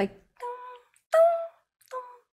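A woman's voice making three short, pitched vocal sounds, each under half a second and about 0.7 s apart, with silence between them, imitating a sound effect panning in the track.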